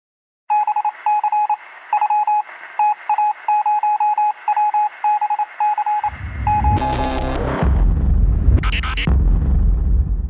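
Produced intro sound design. First a single-pitched beep keyed on and off in irregular short and long pulses, like Morse code heard over a radio. Then, about six seconds in, a deep, bass-heavy logo sting with a falling sweep and a whoosh near the end.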